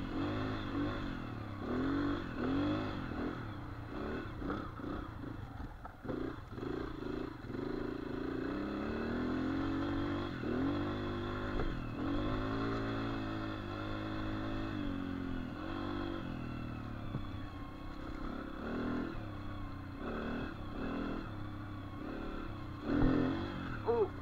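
Dirt bike engine revving up and down again and again as it is ridden over rough ground, its pitch rising and falling every second or two. A brief louder knock comes near the end.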